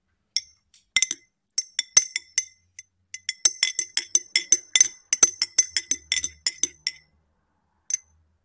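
Metal teaspoon stirring tea in a ribbed glass tumbler, clinking against the glass with a short ring on each strike. A few spaced clinks come first, then a quick run of clinks from the stirring, and a last single clink near the end.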